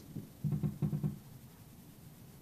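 Two short, low, muffled sounds about half a second and a second in, then quiet room tone.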